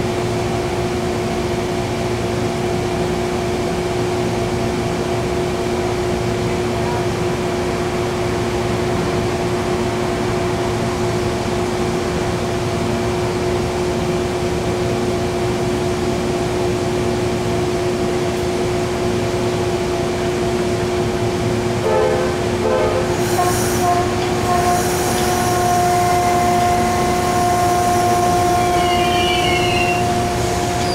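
Amtrak passenger train standing at the platform with a steady hum, then starting to pull out. A few knocks come about two-thirds of the way in, then a sustained high squeal from the train as it begins to roll.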